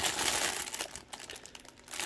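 Thin clear plastic bag crinkling as hands turn a plush toy inside it. The crinkling is strongest in the first second and dies down toward the end.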